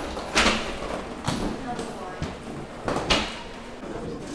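Indistinct background voices with three sharp thumps, the loudest about half a second in and about three seconds in.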